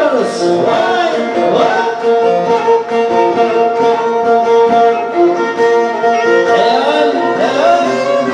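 Live Turkish folk music from a small band of electronic keyboard and bağlama played through a PA: long held notes, with sliding, bending ornaments near the start and again near the end.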